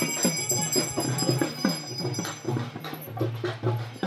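Traditional Indian music with drums, a quick repeating beat, with high steady ringing tones through the first half.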